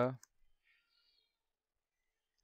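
Near silence after a man's voice trails off, with a faint click shortly after.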